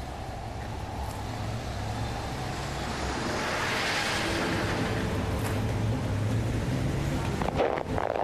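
Street traffic noise over a steady low hum, with a vehicle passing that swells to a peak about halfway through and then fades.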